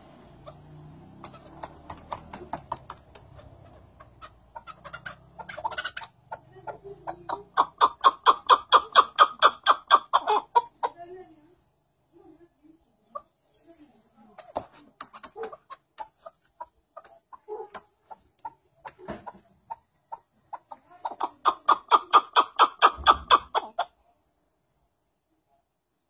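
White chukar partridge giving its rally call: rapid 'chuck' notes that speed up and build into a loud run of repeated calls, twice, with softer scattered notes in between. The bird is in full calling mood.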